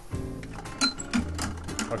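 Hand-spun prize wheel clicking rapidly as its rim pegs strike the pointer, over background music.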